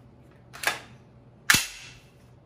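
JP GMR-15 9mm carbine's action being racked by hand to clear the chamber after the magazine is out: two sharp metallic clacks a little under a second apart, the second louder with a short low ring.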